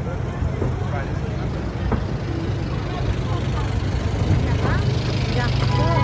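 Busy city street ambience: a steady low rumble of traffic with the scattered voices of a passing crowd.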